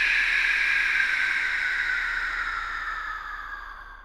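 Whoosh sound effect of a logo intro: a steady hiss whose bright band slowly slides down in pitch, fading away near the end.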